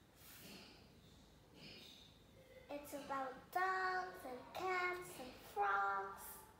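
A young child singing a short run of long held notes in the second half, after a quiet first half.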